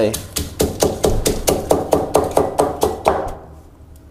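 Granite pestle pounding dry-roasted dried chilies in a granite mortar, stone striking stone at about six strokes a second, crushing the chilies to flakes. The pounding stops about three seconds in.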